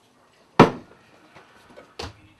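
A sharp knock a little over half a second in, then a lighter knock near the end: hard objects, such as a bottle and a mug, being set down on kitchen surfaces.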